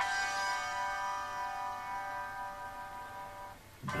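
Instrumental music: a chord struck at the start is left to ring, fading slowly over about three and a half seconds.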